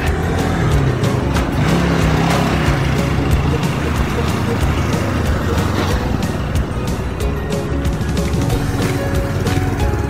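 Road traffic passing close by, a steady low rumble of vehicles including trucks, with background music under it.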